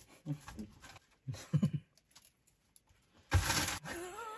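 Cardboard and loose sequins being handled while spilled sequins are scraped up with a scrap of cardboard: faint scraping and rustling, with one brief, loud rustle about three and a half seconds in. A couple of short vocal sounds come early on.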